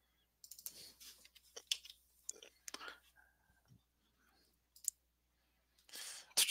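Faint, irregular clicks mixed with quiet, muttered speech.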